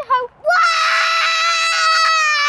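A young child's long, high-pitched scream on one steady pitch, a pretend lion roar, starting about half a second in after a brief short call.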